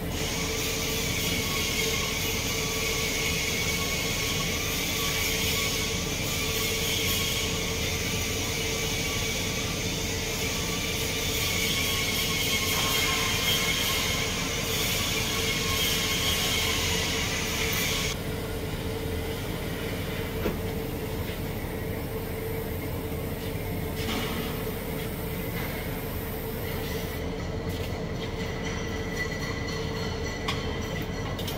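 TIG welding arc on a steel pipe coupon, a steady hiss with a faint whine that runs for about eighteen seconds and then stops, likely the hot pass being laid. A steady hum continues underneath.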